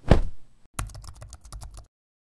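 Logo-animation sound effects: a sudden hit that fades over about half a second, then a quick run of keyboard-typing clicks, about ten a second, lasting about a second, as text types onto the screen.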